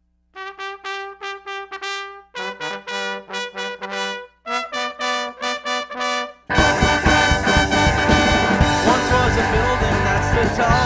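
Ska song intro: unaccompanied brass horns play three short phrases of quick repeated notes, each on a different pitch with a brief pause between. About six and a half seconds in, the full band comes in much louder.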